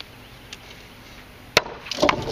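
Large chopper knife chopping a small-diameter dry hardwood stick on a wooden block: a faint tap about half a second in, then one sharp chop about a second and a half in.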